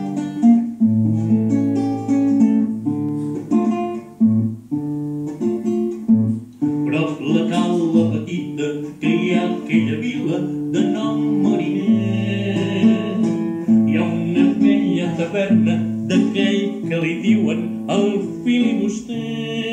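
Acoustic guitar playing chords in a song's opening. About seven seconds in, a man's voice comes in over the guitar.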